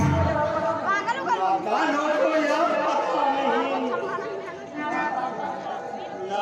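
Speech: men's voices talking.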